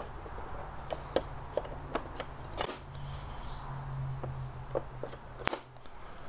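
Light wooden clicks and taps as thin wooden divider strips are fitted into a wooden utensil-organizer box, several in the first three seconds and two more near the end, over a steady low hum.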